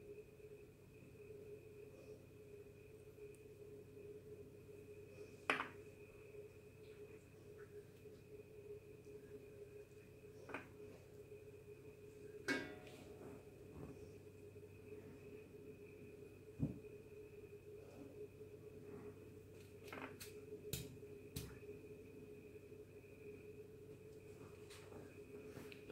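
Faint steady hum under a handful of small clicks and taps, scattered a few seconds apart, from a glue bottle and fingers handling things on a glass tabletop while leather is glued and pressed onto a beaded bracelet.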